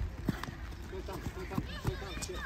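Sharp thumps of a football being kicked and bouncing on an artificial-turf pitch, the loudest right at the start and another near the end, with children's voices calling across the pitch throughout.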